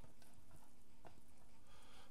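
Quiet kitchen room noise with two faint clicks about a second apart, from gloved hands handling dough in a stainless steel mixing bowl.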